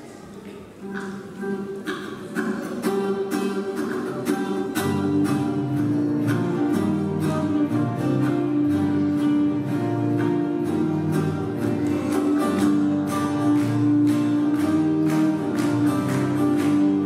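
Several acoustic guitars strummed together in a steady rhythm, starting quietly about a second in and growing fuller from about five seconds.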